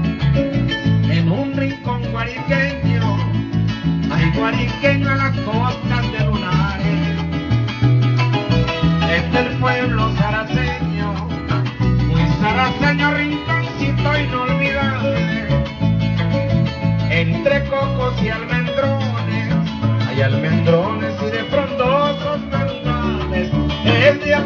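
Venezuelan llanera music played on a llanero harp and a cuatro, with a steady stepping bass line under quick plucked melody runs.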